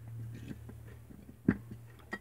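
Handling of a glass low-pressure sodium lamp tube: small faint clicks, then one sharp knock about one and a half seconds in, over a low steady hum.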